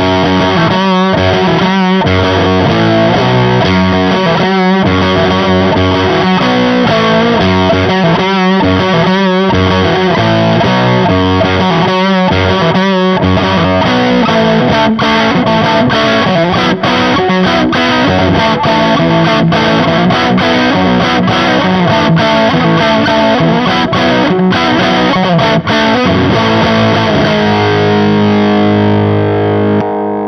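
Gibson '61 reissue SG electric guitar tuned down to C-sharp, played through an EarthQuaker Devices Bows germanium (OC139) treble/full-range booster into the slightly driven crunch channel of a Laney VH100R valve amp with Greenback speakers: distorted, heavy riffing. Choppy, stop-start riffs in the first half, then more continuous playing, ending on a held chord.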